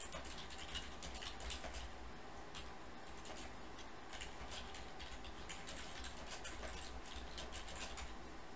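Faint, quick, irregular clicking of typing on a computer keyboard over a low steady hum.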